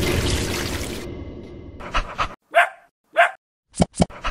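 A rushing noise fades out over the first two seconds, then a dog barks twice, short and about half a second apart, near the end.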